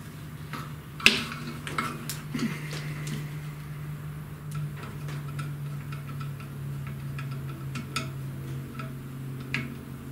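Scattered small clicks and rattles of a hand screwdriver driving a screw into a cable-chain bracket while the plastic drag chain and cable are handled, with one sharp click about a second in. A steady low hum runs underneath.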